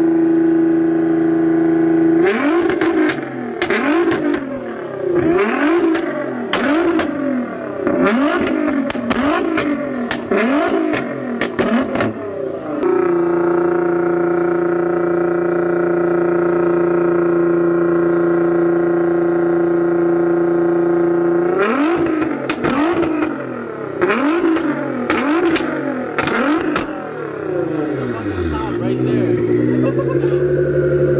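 Nissan GT-R R35's twin-turbo V6 revved hard while parked. It holds high revs for a couple of seconds, then a run of quick throttle blips with sharp cracks as the revs drop for about ten seconds, then a steady high hold for about eight seconds, then more blips, falling back lower near the end.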